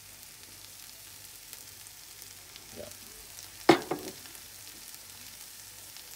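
Food sizzling in a hot frying pan: egg, onion and pickled beetroot slices frying with a steady hiss. A little past halfway, a short, sharp, much louder sound breaks in, followed by two smaller ones.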